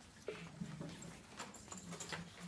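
Faint, low murmuring voices in a large room, with a few scattered small clicks and taps of shuffling feet and handled paper props.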